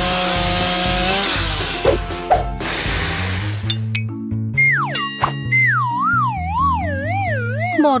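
Small chainsaw buzzing as it cuts through a giant burger bun, a steady whine over a noisy spray that stops about three seconds in. It is followed by a cartoon 'boing'-style wobbling tone that slides down in pitch over light background music.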